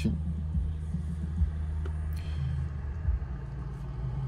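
Steady low vehicle rumble heard from inside a car's cabin, with a faint click about two seconds in.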